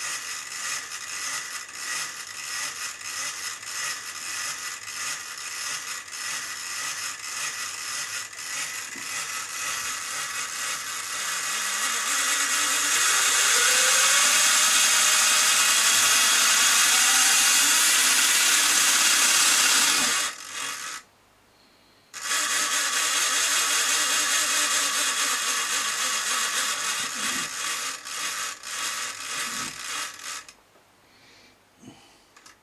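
Model locomotive's small electric motor and gearing running on a bench power supply, a rough buzzing whine. It gets louder and rises in pitch about 12 seconds in, cuts out for a moment around 21 seconds, then runs again. It runs a bit rough, which the repairer puts down to dirt needing a strip-down and clean.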